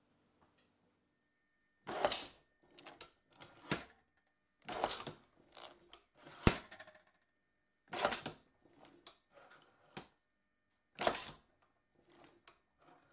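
Brass sheet being set in and cut on a Warco universal sheet metal machine: a series of short metallic clanks and rattles with smaller clicks between them, and one sharp snap about halfway through.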